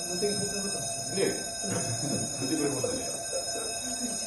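People's voices talking indistinctly, with background music and steady high tones underneath.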